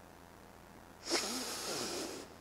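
A Quran reciter drawing a long, audible breath into the microphone, a hissing inhalation lasting about a second that starts about a second in, before resuming the recitation.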